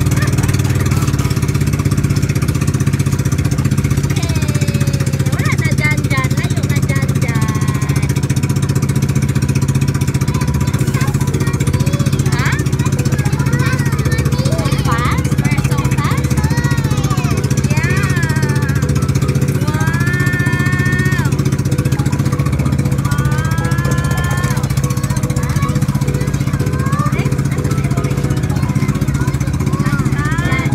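Engine of a motorized outrigger boat (bangka) running steadily under way, a constant low drone.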